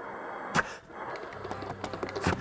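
Breath blown through a bassoon's bocal with no reed fitted: only a breathy hiss and no tone, because without the reed the bassoon cannot sound. There is a short click about half a second in.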